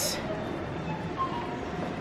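Loaded supermarket shopping trolley rolling across a smooth shop floor, with a steady rumble from its wheels over the store's background noise.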